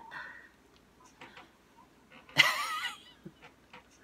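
A woman laughing: a soft breathy laugh, then one short high-pitched squealing laugh about two and a half seconds in, with a few soft clicks between.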